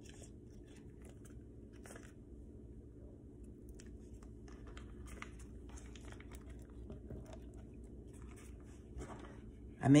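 Faint crinkling and tearing of a butter wrapper as a stick of butter is peeled out of it, in scattered soft rustles over a low steady hum.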